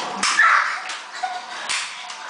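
A few sharp, irregular slaps or smacks, with a short high-pitched voice sound about half a second in.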